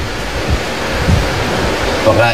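A steady, loud rushing hiss, like wind or surf, with a couple of faint low thumps.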